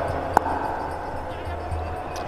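A cricket bat striking the ball: one sharp crack about a third of a second in, over steady background noise.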